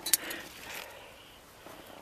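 A brief crackle of leaves and twigs brushed by a hand just after the start, then faint rustling.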